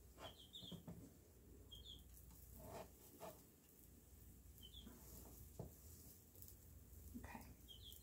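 Near silence: a few faint taps of a spatula on an electric griddle, with a few short, faint bird chirps in the room.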